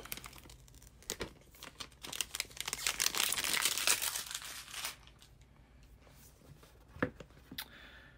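Sealing tear strip of a new iPhone box being pulled off and crinkled: a crackling, tearing rustle for about three seconds in the middle, with a few sharp taps of the cardboard box being handled before and after.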